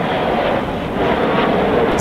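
Jet engine noise from a pair of fighter jets flying past, a steady loud rush.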